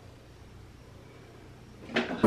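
Quiet room tone with a faint steady low hum, and a brief louder sound near the end.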